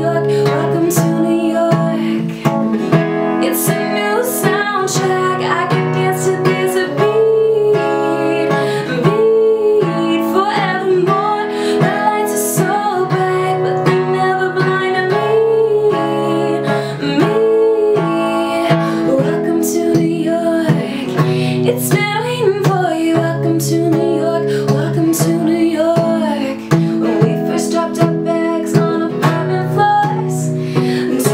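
A woman singing a pop song while accompanying herself on a steadily strummed acoustic guitar.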